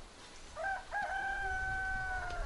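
A rooster crowing: two short notes about half a second in, then one long held note.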